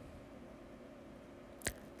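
Faint steady background hum, broken once, near the end, by a single very short sharp click.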